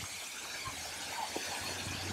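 Soft, steady rush of a waterfall (Steinsdalsfossen), an even hiss of falling water, with a couple of faint ticks.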